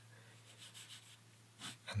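Ballpoint pen scratching faintly on paper in short drawing strokes, with a breath drawn in near the end.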